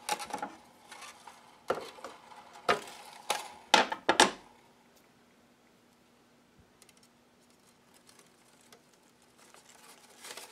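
Thin metal wire being handled and snipped with cutters: a few sharp metallic clicks and snaps, the loudest cluster about four seconds in, then quiet.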